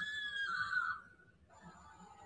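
A young woman's high-pitched, drawn-out squeal of "ay", held on one pitch until it stops about a second in. A fainter, lower steady tone follows about half a second later.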